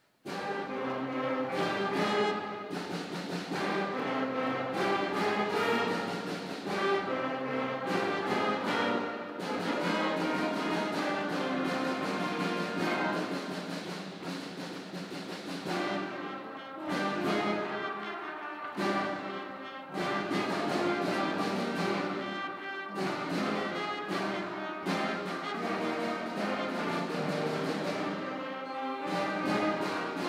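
Student concert band of brass, woodwinds and percussion playing a fast, intense piece. It comes in suddenly with a loud full-band entrance, with repeated accented chords and short breaks between phrases.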